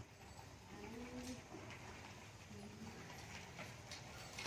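Faint cooing of a pigeon: two short low calls, about a second in and again about two and a half seconds in, over quiet outdoor background noise.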